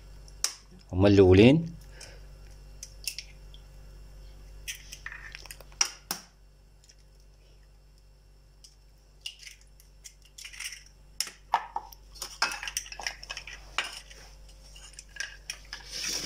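Eggs being cracked against the rim of a bowl and broken open by hand: scattered light taps, clicks and clinks of shell on crockery, busier in the second half.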